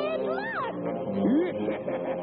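Cartoon character laughing and jeering in a voice that slides up and down in pitch, over steady background music, breaking into a quick run of chuckles near the end.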